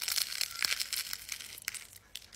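Crunchy bite into a nori-wrapped food, followed by chewing close to the microphone: a sudden dense crackle with several sharp snaps that tails off near the end.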